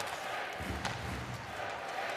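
Ice hockey arena ambience: a steady crowd hum with a sharp click of stick or puck on the ice a little under a second in.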